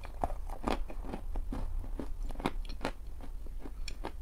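Close-miked biting and chewing of a dense homemade baked-chalk puck: a quick, irregular run of crisp crunches and clicks.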